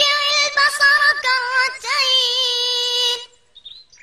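A child's high voice chanting Quranic recitation in melodic tajweed style, holding long drawn-out notes with small ornamental turns. The voice stops a little past three seconds in, leaving a short pause for breath.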